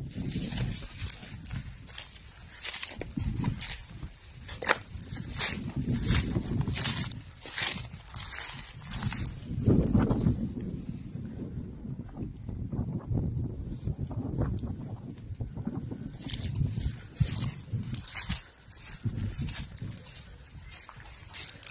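Footsteps and rustling through tall grass and undergrowth, with many short irregular crackles. Underneath runs an uneven low rumble on the microphone, strongest about halfway through.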